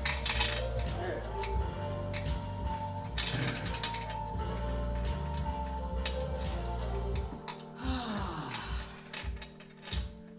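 Metal clinks and rattles as a cable machine's handle attachment is handled at the low pulley, over background music whose bass drops out about seven seconds in. The clinks come most thickly near the end.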